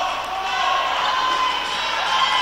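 Gymnasium crowd noise, with spectators' voices and shouts echoing in the hall, and a basketball being dribbled on the hardwood court.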